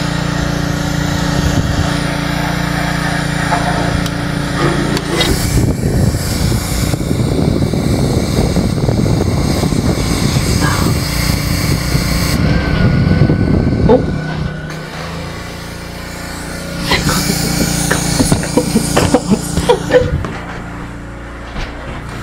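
A small engine running steadily with a low hum. It grows rougher in the middle, dies down for a couple of seconds about fifteen seconds in, and then runs again.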